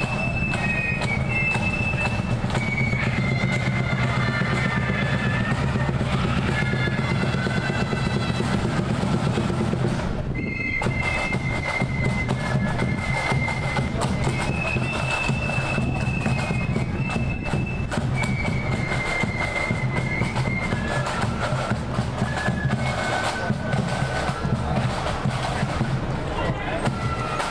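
Parade marching band playing a tune: a line of high held melody notes over steady drumming, with a brief break in the tune about ten seconds in.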